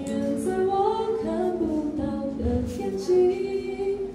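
A woman singing a sung melody with held notes into a microphone, accompanying herself on acoustic guitar.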